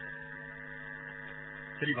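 A steady electrical mains hum, a set of constant tones, held at a low level through a pause in the preaching. A man's voice cuts in briefly near the end.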